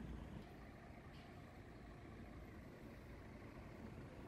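Faint, steady low rumble of city street traffic, with no distinct events.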